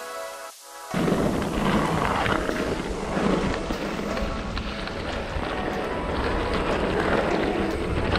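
Mountain bike ride noise on a dry, stony dirt trail: wind buffeting the camera microphone with tyre crunch and frame rattle over the rough ground. It starts suddenly about a second in, after a faint tail of music.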